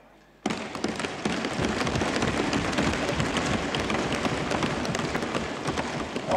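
Members of the assembly breaking into applause, a dense clatter of many hands thumping desks and clapping at once, starting suddenly about half a second in and holding steady.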